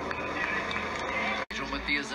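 Television sports commentary, a man's voice played through a TV's speaker, with a sudden momentary dropout about one and a half seconds in where the video is cut.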